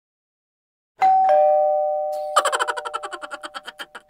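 Intro sound effect: a two-note ding-dong chime, high then lower, ringing and slowly fading, followed about a second later by a quick run of clicks, about ten a second, that die away.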